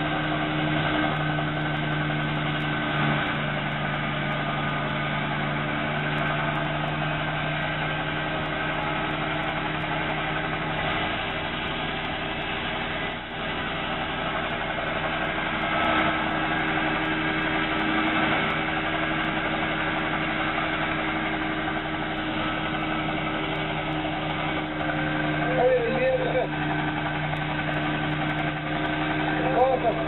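A helicopter's engine running steadily on the ground, giving an unchanging drone with a constant low hum.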